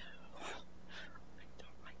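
Faint, reverberant speech picked up from across a room, over a steady low hum.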